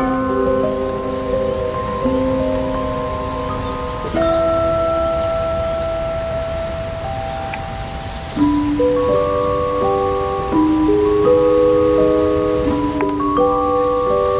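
Background music: a slow melody of long, held, bell-like notes, stepping up in loudness about four and eight seconds in, over a low steady rumble.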